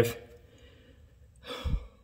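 A man's short breath, a sigh-like exhale with a low puff on the microphone, about a second and a half in, between spoken sentences; otherwise quiet room tone.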